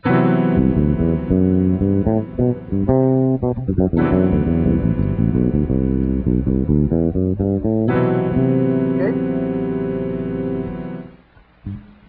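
Bass guitar playing a quick Lydian scale line over a sustained major seventh sharp 11 chord, which is struck afresh three times about four seconds apart. The sound dies away about 11 seconds in.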